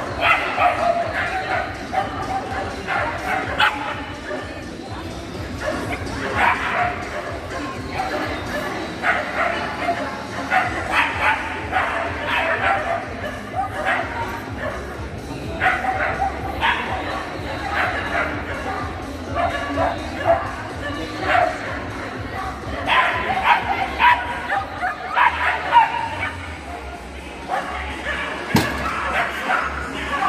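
Pyrenean Shepherd barking repeatedly in short bursts while running an agility course, on and off throughout, with a few brief pauses.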